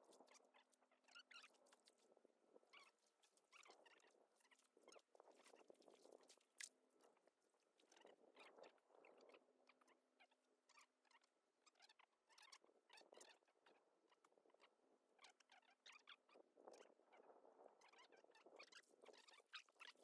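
Near silence, with faint scattered clicks and crackles throughout.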